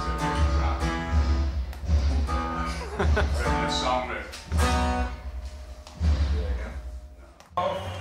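A man singing held notes over strummed guitar with a low pulsing bass. The music breaks off abruptly near the end.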